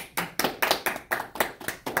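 A small group of people clapping their hands in quick, slightly uneven claps, about five a second.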